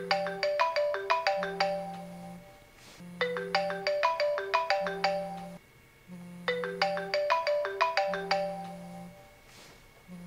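An iPhone ringing with a ringtone: a short tune of quick bell-like notes, repeated about every three seconds, with a low buzz coming and going underneath.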